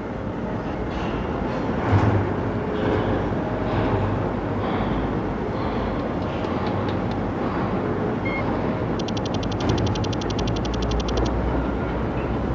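Cartoon sound-effect bed of repair-bay machinery: a steady noisy mechanical rumble and hum. From about nine seconds in, a rapid, even electronic ticking runs for about two seconds, like a computer readout.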